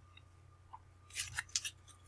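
Oracle cards being handled and shuffled in the hands: a quick run of short card flicks about a second in.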